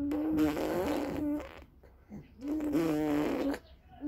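A baby blowing raspberries: two voiced lip buzzes on a steady pitch, each about a second long, the second starting near the middle.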